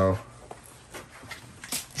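The tail of a man's exclamation, then low room noise in a small cluttered room with a few faint light clicks and rustles, as of things being handled.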